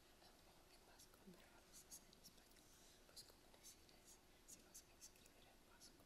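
Near silence with faint whispering: two people conferring in low voices away from the microphone, heard as scattered soft hissing consonants.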